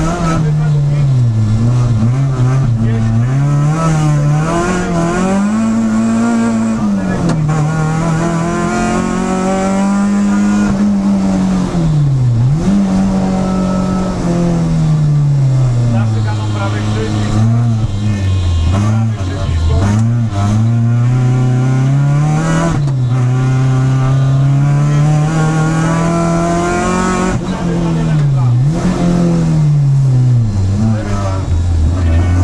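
Peugeot 306 Group A rally car's engine, heard from inside the cabin, revving hard with its pitch repeatedly climbing and falling as the driver works through the gears, with sharp drops in revs at about 12 s, 19 s, 23 s and 29 s as he lifts off for corners.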